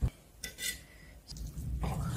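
Chef's knife cutting through grilled pork neck on a wooden cutting board: a knock at the start and a short clink about half a second in, then steadier sawing and rubbing of blade on meat and board in the second half.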